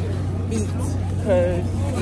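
Speech: a young woman's voice talks briefly over a steady low hum, with a short pause in the talk in the first second.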